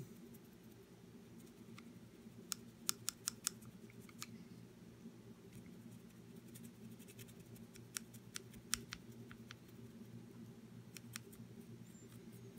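Faint scratchy clicks of a nearly dry paintbrush being worked over a plastic miniature's armour while dry-brushing, in little clusters about three seconds in and again about nine seconds in, over a low steady hum.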